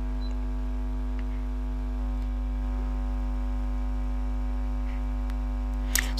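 Steady electrical mains hum in the recording, a low buzz with a stack of evenly spaced overtones that holds at one level throughout.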